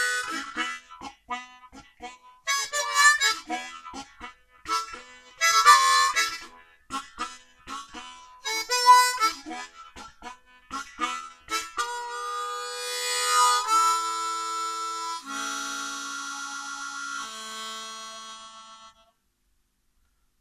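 Hohner Golden Melody 10-hole diatonic harmonica with brass reeds being played. It runs through a lively phrase of short notes and chords for about twelve seconds, then settles into a few long held chords that stop about a second before the end.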